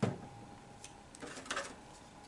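One sharp knock on the tabletop at the start, dying away quickly. A few small clicks and a brief rustle follow as craft materials are handled: a glue bottle, paper leaves and popsicle sticks.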